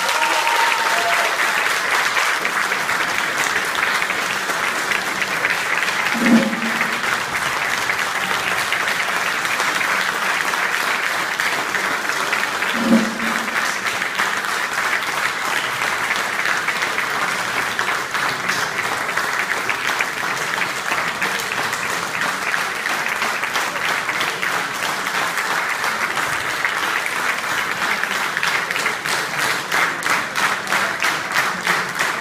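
Audience applauding steadily, with two brief louder pitched sounds about six and thirteen seconds in.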